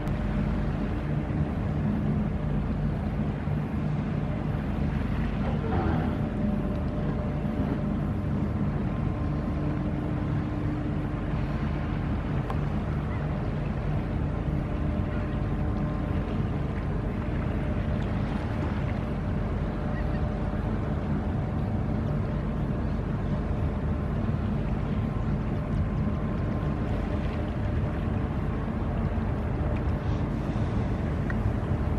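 Steady low drone of a passing cargo coaster's diesel engine, heard across the water.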